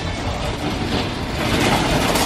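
Metal shopping cart rolling out of a store and over parking-lot pavement, its wheels and wire basket rattling in a steady, dense clatter.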